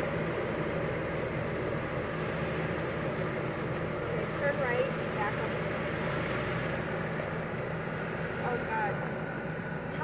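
Jeep Wrangler's V6 engine running at a low idle as it crawls slowly down a rocky trail, a steady drone.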